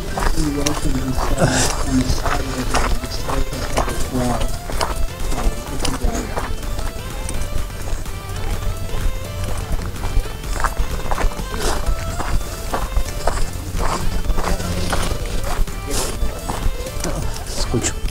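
Footsteps on a gravel path, an uneven series of crunches, over a low steady hum, with music and voices in the background.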